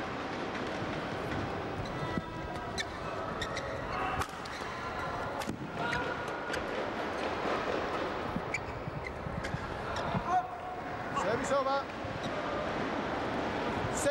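Badminton doubles rally: sharp racket strikes on the shuttlecock every second or so, over the steady murmur of a crowd in a large hall. Near the end the strikes stop and the crowd's noise swells briefly.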